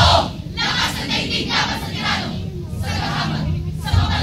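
A speaking choir of many voices shouting together in short, repeated bursts, as in a group chant.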